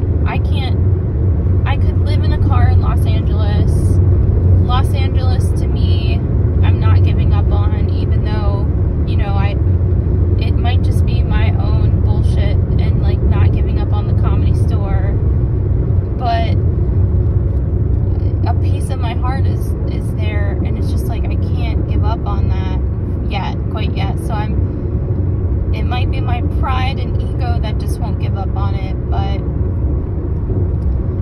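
Steady road and engine rumble inside a moving Hyundai car's cabin, with a person's voice over it off and on throughout.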